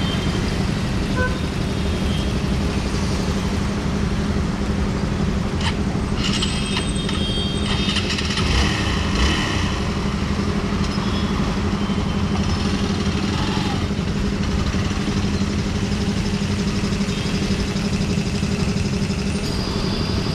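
Hero XPulse 200's single-cylinder engine idling steadily close by, with an even, unchanging hum.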